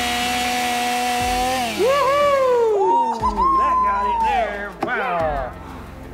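DeWalt chainsaw running at a steady whine, then about one and a half seconds in its pitch drops and swings up and down several times as it is worked against a padlock to cut it off.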